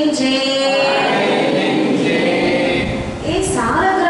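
A woman singing a devotional verse into a microphone, with long held notes. Near the end her voice changes to speaking.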